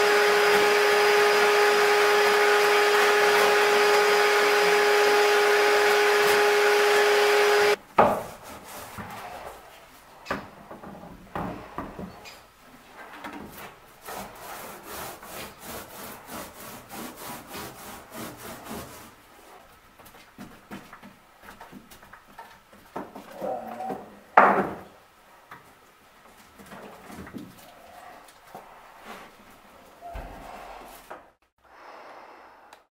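A power tool with a vacuum hose attached runs steadily with a strong, even hum and stops abruptly about eight seconds in. Quieter irregular rubbing, scraping and tapping of hand work follow, with one louder clatter near the end.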